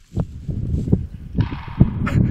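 Wind buffeting the camera microphone: a low rumble with irregular knocks, joined by a hiss about one and a half seconds in.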